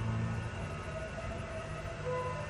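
OTIS passenger lift car running: a steady low hum and rumble from the car and its machinery.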